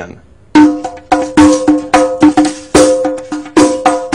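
Riq, a small frame drum with a fish-skin head and jingles, played by hand in a quick rhythm. The strokes begin about half a second in, each one sharp, with a clear ringing tone and a bright jingle splash.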